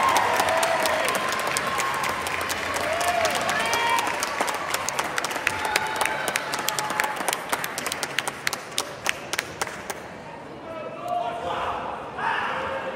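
Audience applause and scattered claps in a large hall, over a murmur of crowd voices, thinning out and dying away about ten seconds in.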